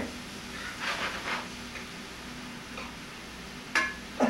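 Shrimp frying in a skillet with a low, steady sizzle. A utensil stirs and scrapes through the pan about a second in, and there is a sharp clink of metal on the pan near the end.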